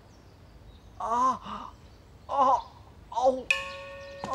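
A young man's short, wavering cries of pain, three in a row, after a blow to the face that has left his nose bleeding. Near the end a bell-like chime rings out and holds.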